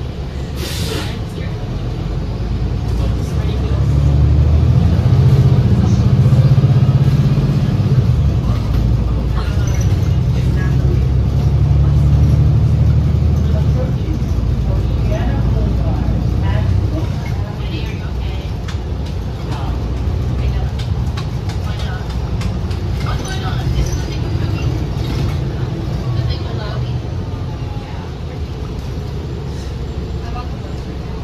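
Interior of a 2019 New Flyer XD60 articulated bus under way: the drivetrain drone swells for several seconds as the bus pulls along, then settles to a steady cruise. Seats and interior fittings rattle throughout, and there is a short hiss near the start.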